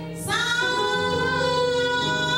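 A female gospel soloist takes a quick breath, then comes in on a long held note that scoops slightly up at its onset. A steady, low sustained chord sounds underneath.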